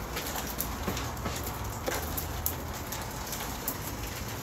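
Steady rain falling, an even hiss with scattered drips and ticks.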